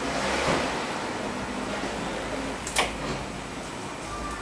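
Handling noises from hand work at the oil filter housing in the engine bay: rustling and rubbing of parts, with one sharp click about three quarters of the way through.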